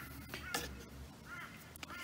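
A few faint, short arching bird calls, about a second apart, over a quiet outdoor background with a couple of light clicks.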